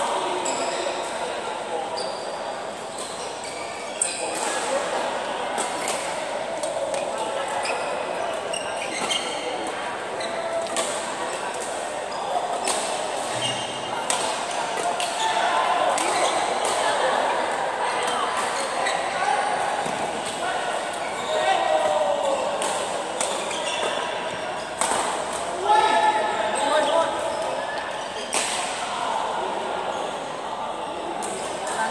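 Badminton rally in a large hall: sharp racket strikes on the shuttlecock at irregular intervals, over a steady background of people's voices echoing in the hall.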